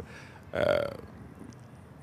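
A man's short hesitant "aah" in conversation, falling in pitch, followed by a pause with only faint room tone.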